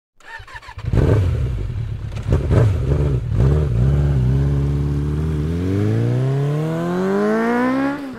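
Motorcycle engine revved sharply a few times, then running steadily before its pitch climbs smoothly for the last two and a half seconds as it accelerates hard, cutting off abruptly at the end.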